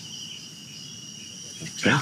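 Crickets chirping steadily, a continuous high trill carried on the night-time outdoor ambience, with a spoken word near the end.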